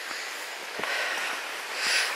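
Steady hiss of a woodland stream running, with one soft footstep on the gravel path a little under a second in.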